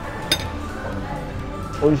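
A single sharp clink of metal cutlery against a ceramic plate about a third of a second in, ringing briefly, over steady background music.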